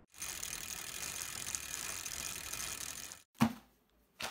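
Intro sound effect of steady mechanical ratcheting clicks, like gears turning, that cuts off abruptly about three seconds in, followed by a single short, sharp knock.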